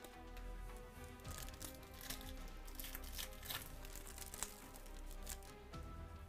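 Trading cards being shuffled through by hand, a run of quick crisp rustles and flicks as the cards slide against each other, with the sharpest flick about four seconds in. Quiet background music plays under it.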